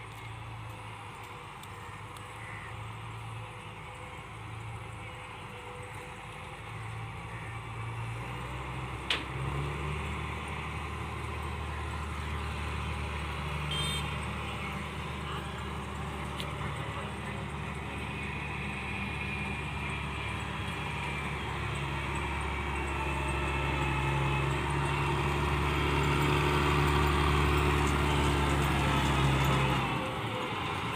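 Combine harvester's diesel engine running steadily as the machine drives over a grassy field, growing louder as it comes closer, its note rising about nine seconds in. A single sharp click sounds at about the same time.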